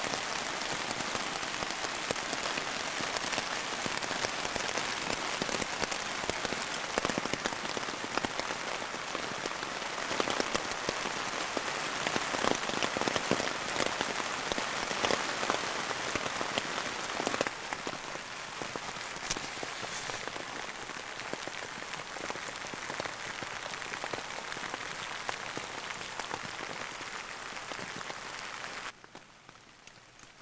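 Rain pattering on the nylon fabric of an MSR tent, heard from inside the tent: a dense, steady patter of drops. It turns a little quieter about two-thirds of the way through and falls away just before the end.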